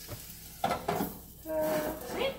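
Egg and vegetables sizzling in a frying pan while a glass lid is set down on it, with a couple of sharp clinks of lid against pan about half a second to a second in.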